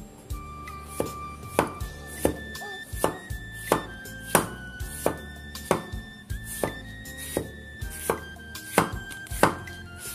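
Cleaver slicing through kohlrabi and striking a wooden cutting board in a steady rhythm of about three chops every two seconds.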